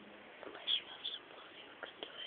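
Faint whispering: a few soft, breathy sounds about half a second and a second in, with a small click near the end.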